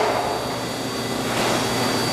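Steady hiss and rush from a gas stove with a pan of hot sesame oil on a medium-high flame, swelling slightly near the end.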